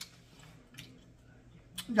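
Quiet room tone with two faint clicks about a second apart; a woman's voice starts right at the end.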